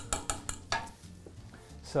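Wire whisk clicking against the sides of a stainless saucepan as thick cheese sauce is whisked: a quick run of taps that stops about three-quarters of a second in.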